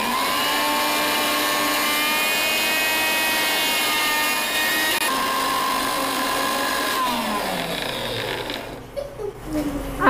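Electric mixer grinder running, grinding chammanthi paste in its steel jar: a steady motor whine that starts suddenly and shifts pitch about halfway through. It is switched off about seven seconds in and winds down with a falling pitch.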